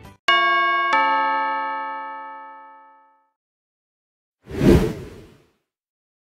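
Two-note electronic doorbell-style chime, a 'ding-dong' whose two strikes ring out and fade over about two seconds. About four and a half seconds in, a short noisy sound effect lasting under a second.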